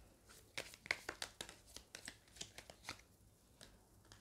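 Tarot cards being handled and dealt from a deck: a faint, quick, irregular run of light papery snaps and flicks, about a dozen in all, heaviest in the first second and a half.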